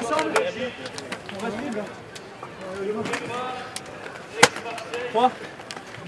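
Men's voices in a team huddle: scattered low talk and a count of "three" near the end. Scattered sharp clicks, and one loud sharp crack about four and a half seconds in.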